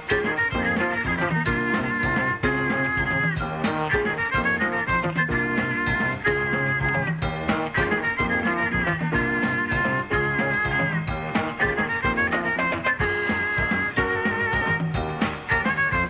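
Small jazz band playing swing: a violin carries the melody in long, held notes over piano, upright bass and drum kit.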